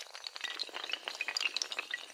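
Sound effect of breaking and scattering pieces: a sharp crash at the start, then a dense, irregular clatter of small clinks and short glassy pings.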